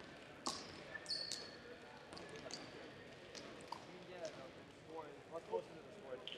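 Dodgeballs bouncing and thudding on a gym's hardwood floor, scattered single impacts with a brief high squeak about a second in. Distant voices join near the end.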